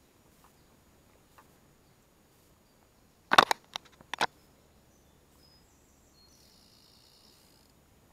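A quick cluster of four or five sharp knocks and slaps over about a second, about three seconds in, from a small chub being handled and unhooked. Faint high chirping from a small bird follows near the end.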